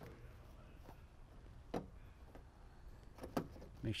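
Plastic tailgate handle cover and its clips being handled and lined up against the tailgate trim: two short sharp plastic clicks about a second and a half apart over a low steady hum.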